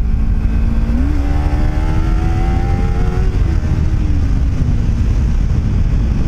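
Kawasaki Ninja 300 parallel-twin engine under way: its note steps up about a second in, climbs steadily as the bike accelerates, then falls away over the next couple of seconds as the throttle rolls off. Wind rumbles heavily on the microphone underneath.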